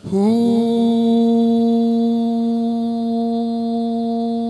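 A man's singing voice sliding up into one long note and holding it steady, in Punjabi Sufi devotional singing (kalam) into a microphone.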